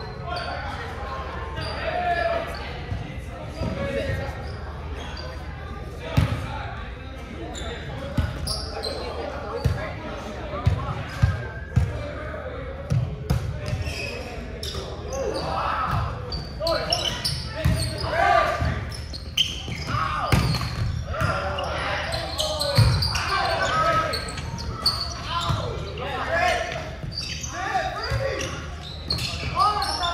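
Volleyball being struck and bouncing on a hardwood gym floor: sharp slaps every second or few, among players' shouts and chatter, all echoing in a large gym hall. A steady low hum runs underneath.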